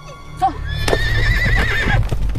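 A horse whinnying: one long quavering call starting just under a second in, over hoofbeats as the horse moves off.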